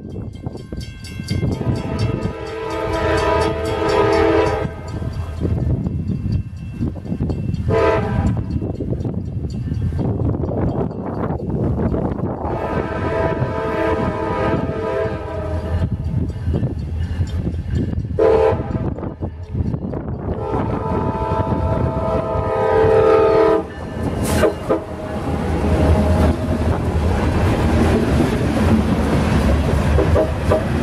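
Air horn of CSX EMD GP40-3 diesel locomotive 6520 sounding for a grade crossing as it approaches: long, short, long, short, long blasts. About 25 seconds in, the locomotive passes close by and a loud, steady rumble of engine and wheels takes over as the freight cars roll past.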